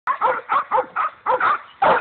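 Young hog dog bay-barking at a wild hog it is holding at bay, a fast run of short barks at about three to four a second.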